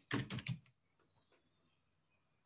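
Computer keyboard typing: a short quick run of keystrokes in the first half second as numbers are entered into a spreadsheet, then near silence.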